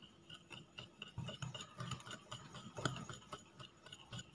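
Small wire whisk beating a wet curd-and-sugar batter in a glass bowl: faint, irregular clicks and taps of metal against glass, with one louder click about three seconds in.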